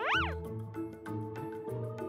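Background music, with a short, high-pitched cartoon-style meow sound effect right at the start that rises and then falls in pitch.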